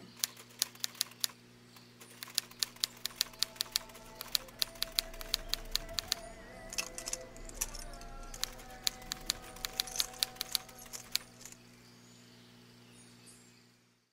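Typewriter keys clacking in quick, uneven runs over a low, sustained music drone. The typing stops about eleven seconds in, and the drone fades out near the end.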